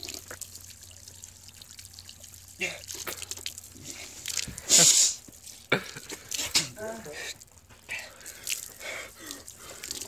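Water running from an outdoor spigot and dripping and splashing onto the ground, with a man's short pained groans and gasps. A loud sharp hiss comes about halfway through.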